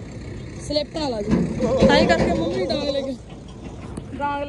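People talking while a heavy road vehicle drives past, its low engine and road noise under the voices, loudest a little over a second in.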